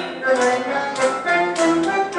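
A woman singing a tango into a microphone over instrumental accompaniment, with notes held briefly between phrases.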